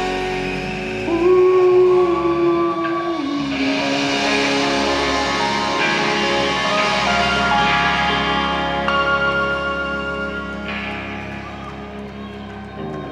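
Live band's closing outro: electric guitar and keyboard holding sustained notes and letting them ring, without drums, with a couple of slow shifts in pitch, fading gradually near the end.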